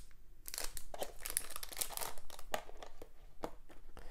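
Clear plastic bag crinkling as it is handled, a run of small irregular crackles.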